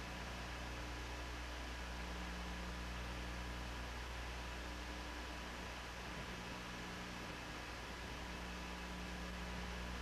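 Steady hiss with a low electrical hum and a few faint steady whining tones: the background noise of an old space-to-ground TV downlink recording.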